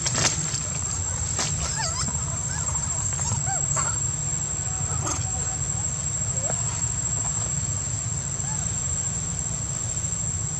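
Young long-tailed macaques giving short squeaky calls that rise and fall in pitch, several in the first four seconds, over a steady high-pitched insect drone and a low rumble.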